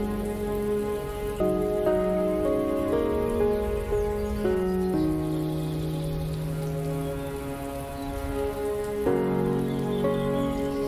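Slow, calm instrumental relaxation music of held notes and chords that change every second or so, over a steady hiss of water noise like rain.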